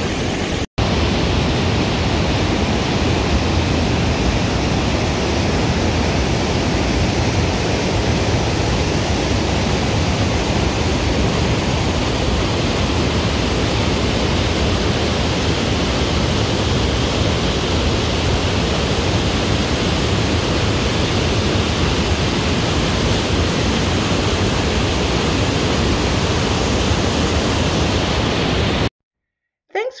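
Loud, steady rush of a waterfall's whitewater tumbling over boulders. There is a momentary break about a second in, and the sound cuts off abruptly about a second before the end.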